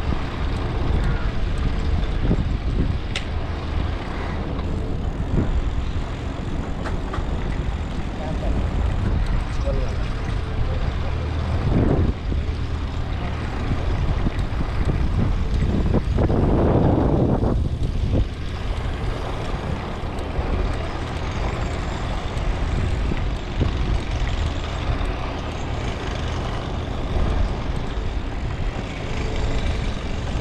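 Wind rushing over a handlebar-mounted camera's microphone while cycling, a steady low noise, with scattered knocks from the bicycle rolling over brick paving. A brief louder swell comes about sixteen seconds in.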